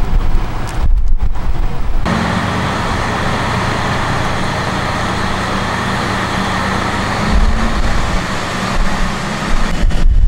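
Diesel local train running, heard from inside the carriage: a steady rumble of engine and running noise with a low engine hum that sets in about two seconds in and grows heavier after about seven seconds. A couple of knocks come before it, around one second in.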